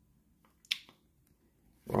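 Trading cards handled in the hands, mostly quiet, with one sharp click a little under a second in and a couple of fainter ticks around it.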